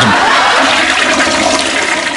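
Toilet flushing: a steady rush of water that eases off near the end.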